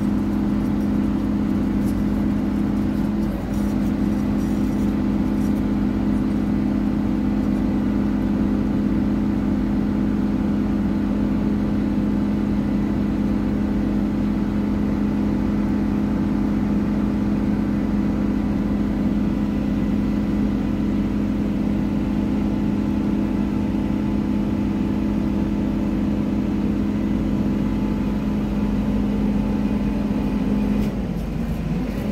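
Sumitomo SP-110 crawler pile driver's diesel engine running steadily at working speed as the machine lowers its leader mast, with a brief dip in the note about three and a half seconds in.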